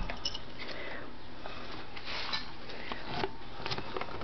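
Several Scottish terrier puppies eating at their food bowls: irregular sniffing, snuffling and chewing, with small clicks and knocks.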